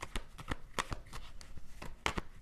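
A tarot deck being shuffled by hand, heard as a quick, irregular run of card clicks and snaps, about six a second.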